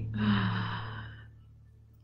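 A woman's breathy exhale trailing off a laugh, fading away over about a second, over a steady low hum.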